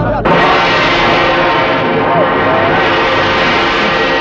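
A sudden loud, sustained chord of film-score music, starting a moment in and holding steady, with a brief man's shout about two seconds in.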